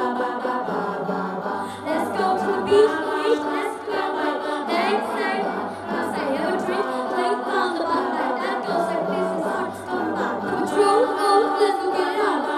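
A group of young voices singing together through stage microphones and loudspeakers.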